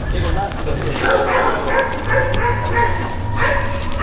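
Hunting dogs yipping and whining from the dog boxes on a hog-hunting buggy, over a steady low rumble.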